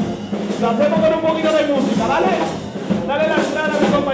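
A charanga, a brass-and-drum party band, playing live dance music, with a pitched melody line and drums underneath.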